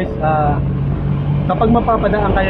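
A vehicle's engine running steadily, heard from inside the cabin as a low hum, with a voice speaking briefly twice over it.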